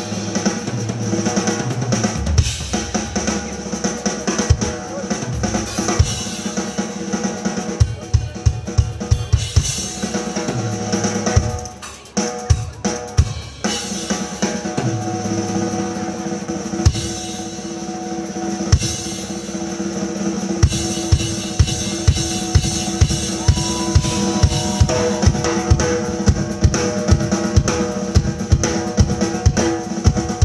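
A drum solo on a Pearl drum kit: bass drum, snare and cymbals played hard and fast. It has a flurry of rapid bass-drum strokes about a third of the way in, and it settles into a steady pulse of about two bass-drum hits a second in the last third.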